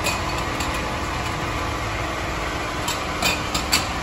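Metal clinks of a four-way lug wrench working the wheel nuts, with several sharp clinks close together near the end, over a steady low rumble.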